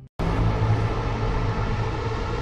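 Title-sequence sound effect: a steady low rumble that starts suddenly just after a brief silent gap.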